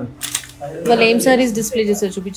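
A person talking, with a few short clicks near the start.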